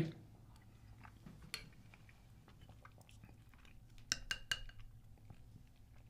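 Quiet chewing of a mouthful of chili, with a few light clinks of a metal spoon against a bowl: one about a second and a half in and a short cluster about four seconds in.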